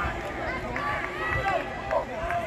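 Several people's voices overlapping, calling and talking at once among football players and sideline staff on the field, with low thumps underneath.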